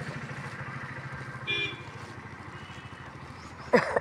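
A small engine running steadily with a rapid, even putter. A short burst of voice near the end is the loudest sound.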